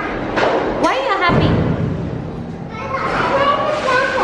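A young girl's voice talking in short phrases, with a low, dull rumble in the pause between them.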